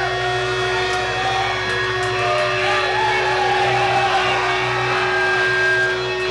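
Live rock band's stage sound between songs: one steady held tone from the guitar amplification over a low amp hum, while audience members shout and whoop.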